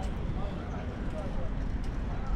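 Wind rumbling steadily on the microphone of a camera carried on a moving bicycle, with faint voices in the background.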